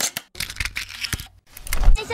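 Glitchy logo-intro sound effect: a rapid, irregular string of short clicks and crackles, then a low rumble just before the end.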